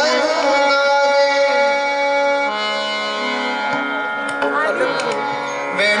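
A male classical singer sings an ornamented gaulan line with harmonium accompaniment: the harmonium holds steady notes, strongest through the middle, while the voice glides in and out of them. A few tabla strokes sound in the second half.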